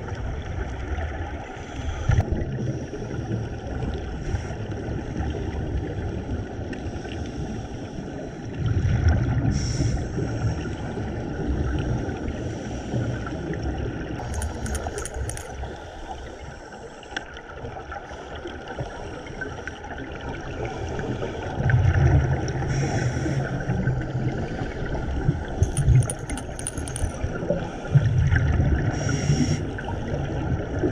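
Scuba diving heard underwater through the camera: a steady hiss, with the diver's exhaled bubbles rumbling and gurgling in bursts of about two seconds, three times, several seconds apart. There are also a couple of brief crackles.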